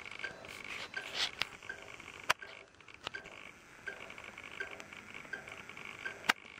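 VHF wildlife-tracking receiver's speaker putting out static hiss with a short beep from a radio collar's transmitter about every three quarters of a second. A few sharp clicks come over it.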